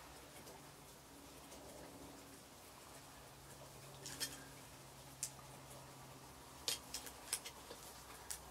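Hair scissors snipping through a lock of hair with faint short clicks: single cuts about four and five seconds in, then four quicker snips near the end.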